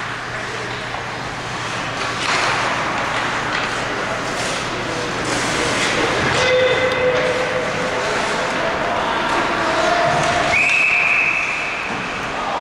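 Indoor ice hockey play: skate blades scraping and carving on the ice with stick and puck knocks, over a steady low rink hum, with a few sharper swells of scraping. A held high whistle sounds for about the last second and a half.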